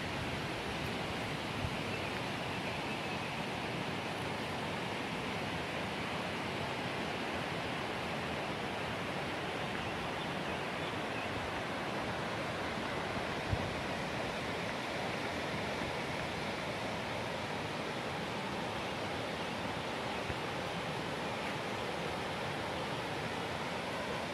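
Rocky mountain river rushing over stones: a steady, even rush of water with no change. A single brief thump about halfway through.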